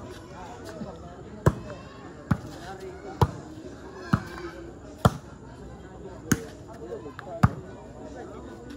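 A volleyball rally: about seven sharp hits of the ball, roughly one a second, over the voices of a watching crowd.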